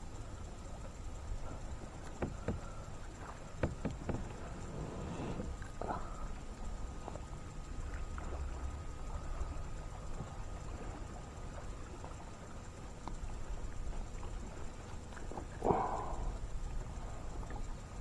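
Lake water lapping against a plastic sit-on-top fishing kayak, with wind rumbling on the microphone. There are a few light clicks and knocks in the first few seconds and one louder knock near the end.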